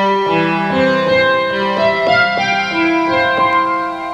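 Synclavier sampler playing its sampled Steinway grand piano patch with an altered envelope: a run of notes and chords, many held long and overlapping.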